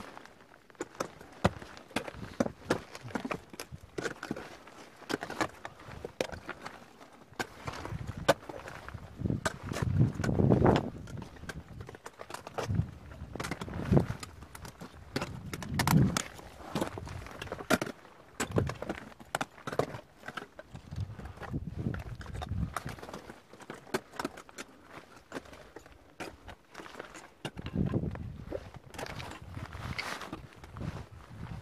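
Scattered clicks, knocks and scrapes of gloved hands, boots and metal climbing gear against rock during a rock scramble, picked up close by a helmet-mounted camera, with a few louder rushes of handling noise.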